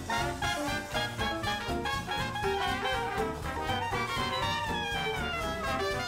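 Upbeat swing-style background music with brass.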